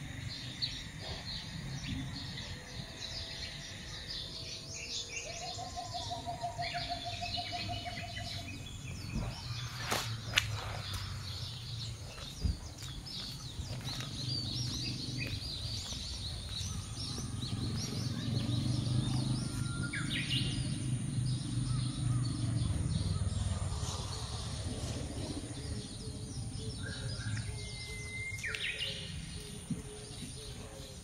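Several birds chirping and calling, with many short high calls scattered through the whole stretch and a brief trilling call early on. A low steady rumble runs underneath and swells in the middle, with a couple of sharp clicks.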